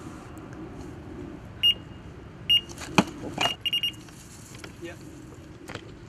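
Electronic carp bite alarm bleeping, a few single bleeps and then a quick run of several, as a fish picks up the bait and takes line. A sharp click comes about halfway through.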